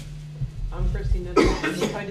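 A person coughs once, loudly, about a second and a half in, amid soft talk; a steady low hum runs underneath.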